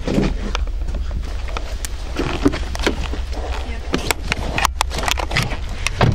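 A handheld camera jostled while being carried quickly: a constant low rumble on the microphone, with many scattered clicks, knocks and rustles of handling and movement, and short bursts of voices.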